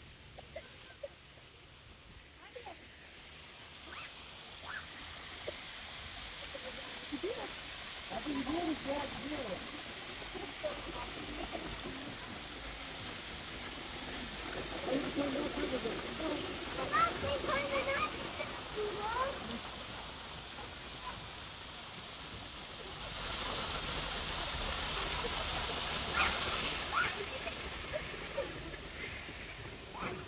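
Water splashing and trickling down a small rock cascade into a pond, loudest for a few seconds in the second half, with scattered distant voices.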